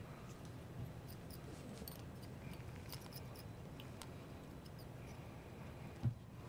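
Faint small clicks and scratches of fly-tying materials being handled at the vise, as a synthetic bunny strip is wrapped figure-eight through the fly's eyes, over a low steady room hum.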